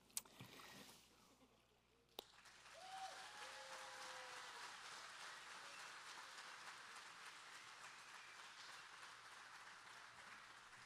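Faint applause from a small group, beginning about two and a half seconds in and carrying on steadily, preceded by two sharp clicks.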